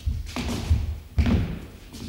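Heavy thuds of dancers' feet striking a wooden studio floor, the loudest about two-thirds of a second and just over a second in.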